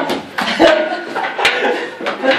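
A few sharp smacks of boxing gloves landing during sparring, the loudest about a second and a half in, with short bursts of onlookers' voices between them.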